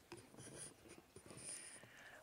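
Faint scratchy rustling of a robe being put on, its zipper being worked, in two short stretches about half a second and a second and a half in.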